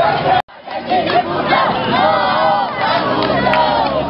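Crowd of protesters shouting together, many loud voices overlapping. The sound drops out sharply for a moment about half a second in, then the shouting resumes.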